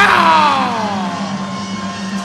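A loud shout of "Ah!" that starts suddenly and slides down in pitch over about a second, over steady ringside music.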